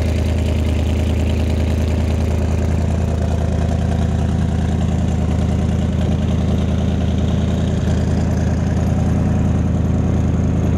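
1969 Corvette's 427 big-block V8 idling steadily through its side-exit exhaust pipes, with no revving.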